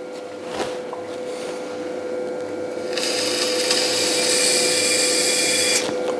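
An electric pottery wheel hums steadily at one pitch while a small wooden stick trims excess clay from the base of a spinning stoneware bowl. The clay is gritty and heavily grogged. About halfway through, the trimming becomes a loud, hissing scrape that stops abruptly near the end.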